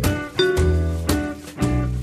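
Instrumental background music with a regular beat and a bass line.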